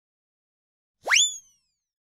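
A single cartoon sound effect about a second in: a quick tone that swoops sharply upward, then slides down a little, lasting about half a second.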